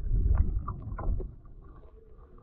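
Muffled underwater sound picked up by the microphone of a DJI Osmo Action camera submerged without a waterproof case: low sloshing water rumble with a few knocks in the first second and a half, then quieter.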